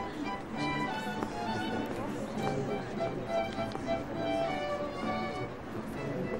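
Music led by a violin playing held notes, with the indistinct chatter of a crowd of guests underneath.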